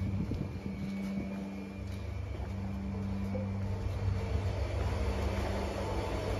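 A machine running with a steady low hum that grows a little fuller and louder toward the end.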